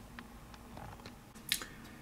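Faint handling of plastic building bricks, with a sharp click about one and a half seconds in.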